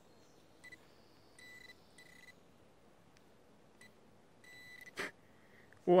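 Handheld pinpointer probe giving a series of short, high beeps, some clipped and some held a little longer, as it is pushed through the loose soil of a dug hole, signalling metal in the dirt: a small coin. A sharp click about five seconds in.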